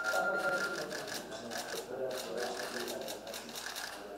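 Low murmur of voices in a room, with a run of sharp clicks, a few a second, and a brief steady beep in the first second.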